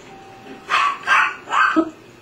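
A dog barking three times in quick succession, right after a doorbell is pressed.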